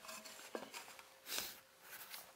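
Faint handling sounds of a canister dust-collector filter and its lid on a wooden workbench: a light click about half a second in, then a brief scuffing noise a little after the middle.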